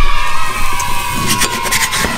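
A wooden spatula scraping and rubbing across a non-stick frying pan as it slides under a cooked pancake to lift it, in a run of quick scratchy strokes that are loudest at the start.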